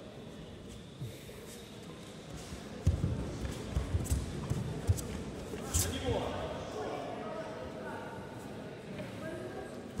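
Judoka thumping on the tatami mats as they grapple and go down in a throw: several heavy thuds between about three and six seconds in. Voices follow in the hall.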